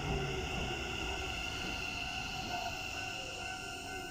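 Keikyu New 1000 series electric train pulling into the platform and slowing, a low rumble under several steady high-pitched whine tones.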